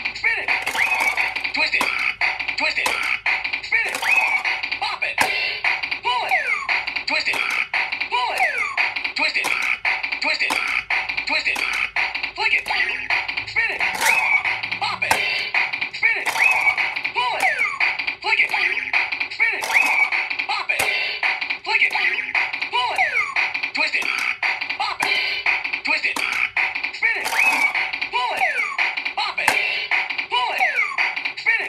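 Bop It Extreme toy playing its electronic beat, with a steady click rhythm, while its voice calls out commands and short gliding sound effects answer each move as the controls are worked in a fast game.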